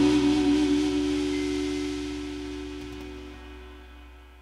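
A rock band's final chord ringing out on acoustic guitar, electric guitar and electric bass, fading steadily with no new notes played.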